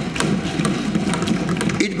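Assembly members thumping their desks in approval: a dense, rapid patter of knocks with voices mixed in. It stops near the end as the budget speech resumes.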